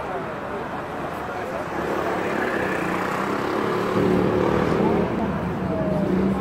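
Crowd chatter in a busy street, with a motor vehicle's engine running close by: a steady low hum that grows louder from about two seconds in.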